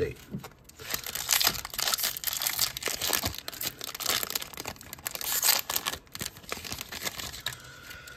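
Wrapper of a Topps Chrome basketball card pack crinkling and tearing as it is opened and handled by hand: a dense run of crackles that dies down near the end.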